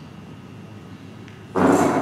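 Low steady room tone of a lecture hall through the PA. About one and a half seconds in comes a short, breathy rush of air into a handheld microphone as the speaker draws breath.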